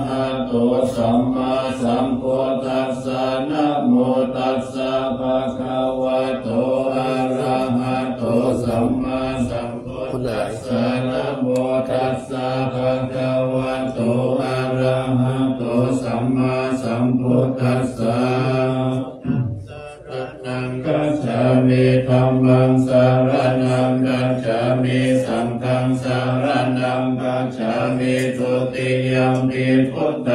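Group of Thai Buddhist monks chanting Pali blessing verses together in a steady low monotone, with a short break for breath about twenty seconds in.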